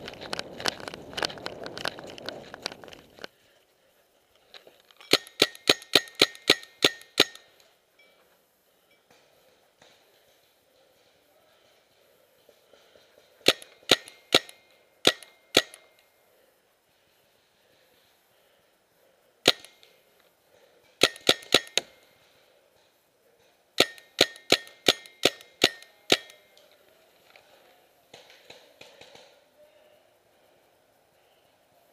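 Running footsteps crunching through dry leaves and pine needles. Then a paintball marker fires close by in rapid strings of sharp pops, several strings with pauses between them and a single shot near the middle.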